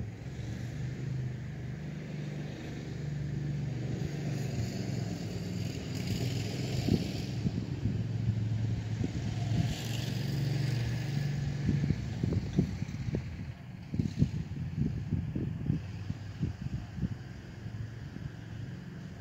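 Landmaster LM650 UTV's 653cc engine running while the machine stands still, its speed rising and settling a couple of times. In the last few seconds it goes to an uneven low putter.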